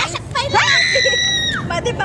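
A woman's high-pitched shriek, held for about a second with a quick rise at its start and a drop at its end, amid women talking.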